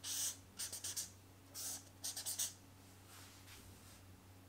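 Felt-tip marker strokes scratching on flip-chart paper as two arrows are drawn: a quick cluster of strokes in the first second, then a second cluster about a second and a half later.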